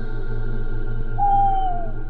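Eerie ambient background music drone, with a single clear tone that slides downward in pitch over most of a second, starting just past the middle.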